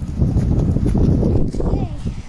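Quick footsteps on pavement under a loud, uneven rumble of noise on a phone microphone carried along at a run.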